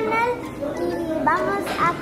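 Young girls' voices talking, high-pitched and rising and falling in pitch.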